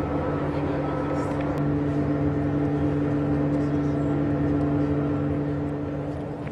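A steady engine or motor hum holding one even pitch.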